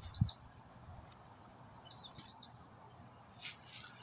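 Small birds chirping faintly: short high twittering calls at the start, about two seconds in, and again near the end, over a low steady background rumble.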